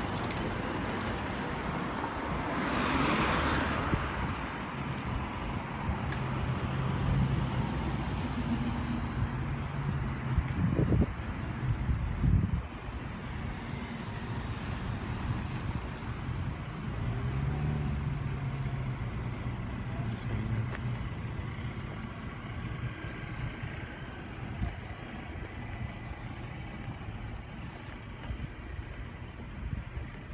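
Street traffic: cars and SUVs driving past at a town intersection, engines and tyres swelling and fading as each goes by. Two sharp thumps stand out about eleven and twelve seconds in.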